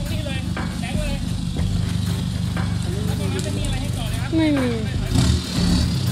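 Toyota Hilux 4x4 pickup's engine running at low, steady revs as the truck crawls up a steep, muddy, rutted slope, with a few heavier low surges about five seconds in.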